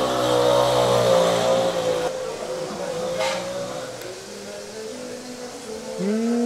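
A motor vehicle engine running close by, its pitch wavering slightly, getting quieter after about two seconds.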